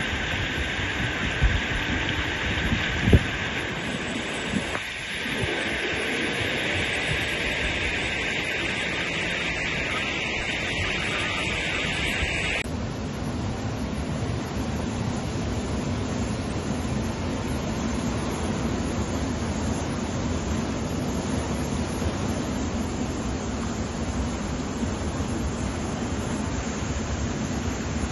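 Floodwater of the Manjira River rushing and churning over a causeway, a steady noise of running water mixed with wind on the microphone. A few knocks in the first seconds, and the tone of the noise changes abruptly about halfway through.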